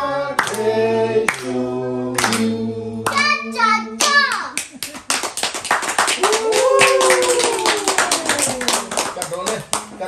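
A small group of voices sings a birthday song, holding long last notes for about the first four seconds. Then it breaks into fast clapping and cheers that rise and fall as the birthday candle is blown out.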